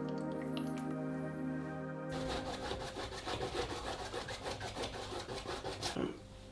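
Soft background music with small drip-like clicks, which cuts off about two seconds in. Then comes a paintbrush scrubbing paint onto a stretched canvas in quick, repeated strokes.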